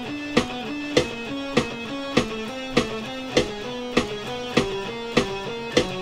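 Electric guitar picking a chromatic exercise in a galloping rhythm, single notes stepping up and down by half steps, against a steady metronome click at 100 beats per minute. The clicks are the loudest sound, one every 0.6 seconds.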